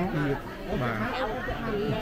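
Speech only: people talking, several voices over one another.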